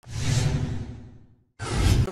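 Two whoosh transition sound effects. The first starts at once and fades away over about a second and a half; after a brief silence, the second swells up quickly near the end and cuts off.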